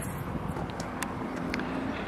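Steady outdoor background noise with a faint hum that sets in about a third of the way through and a few light clicks.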